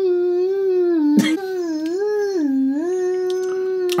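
A voice holding one long hummed note, mostly steady in pitch, sliding down and back up a little past the middle, with a brief click about a second in.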